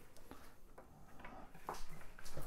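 A few faint clicks and light knocks of small objects being handled and put away on a table, the clearest one near the end.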